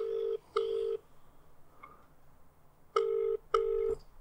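Telephone ringback tone heard through a mobile phone's loudspeaker: two double rings, each a pair of short beeps, about two and a half seconds apart. This is the Australian double-ring pattern, and it means the outgoing call is ringing and not yet answered.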